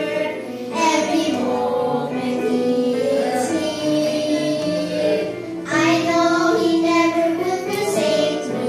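A small group of young girls singing a children's gospel song together into microphones, with instrumental accompaniment; they sing the line 'Jesus sticks closer than a brother; every moment He is near', drawing breath between phrases.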